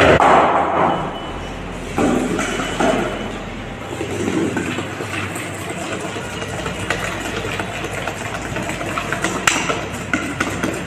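Wire balloon whisk beating butter and sugar in a stainless steel bowl, the wires scraping and clicking against the steel, with many quick ticks in the second half. This is the creaming of butter and sugar into a pale cream.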